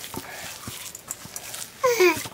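Hands kneading wheat-flour dough in a steel bowl, with faint soft squishing and slapping. Near the end comes a short, loud, high-pitched cry that falls in pitch.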